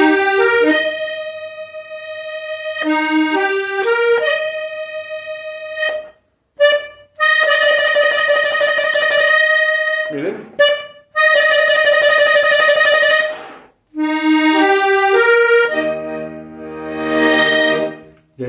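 Hohner Corona III three-row button accordion playing a melodic passage: quick ascending arpeggios that open into long held chords, broken by three short pauses, with low bass notes sounding near the end.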